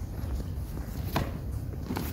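Hall room noise with two faint soft thumps, about a second in and near the end, of bare feet stepping on gym mats.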